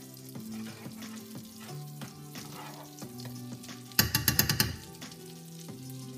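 Melted butter and brown sugar sizzling in a frying pan while a metal spoon stirs and spreads it, under background music. About four seconds in comes a loud, rapid clatter lasting under a second.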